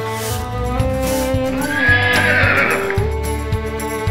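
A horse whinnying over background music. The whinny begins about a second and a half in and lasts about a second.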